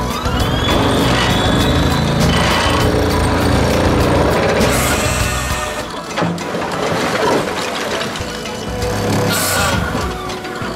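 Hydraulic excavator's diesel engine working under load while an Xcentric XR20 impact ripper attachment tears into lava stone, with many quick cracks and clatters of breaking rock over the steady engine sound. The level drops briefly about six seconds in.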